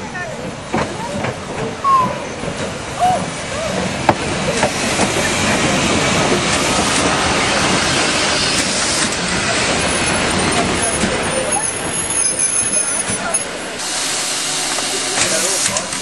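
Narrow-gauge steam locomotive drawing its train into a station: a steady hiss of steam with the rumble of carriages rolling past, over people talking. From about fourteen seconds the rumble drops away and a brighter hiss of steam stands out.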